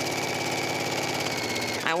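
Electric sewing machine stitching steadily at speed: a motor whine over rapid, even needle strokes, stopping just before the end.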